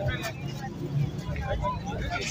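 Indistinct voices of people talking over a low, steady rumble.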